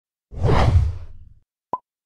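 Logo-animation sound effects: a whoosh with a deep low rumble, about a second long, then one short, bright pop near the end.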